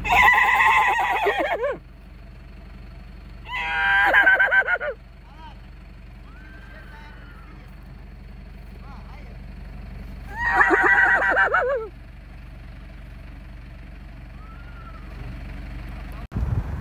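Whinnying: a man imitating a mare's whinny and a horse neighing back, three loud quavering calls that fall in pitch, with fainter short calls between them.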